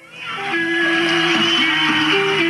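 Live rock concert sound fading in about a quarter second in: steady held notes under a loud, even wash of noise.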